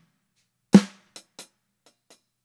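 A single snare drum hit about three quarters of a second in, with a short ringing tail and two faint taps after it. It comes from a recorded snare sample played through an FMR RNC1773 hardware compressor at a 4:1 ratio with medium attack and release: a moderate amount of compression.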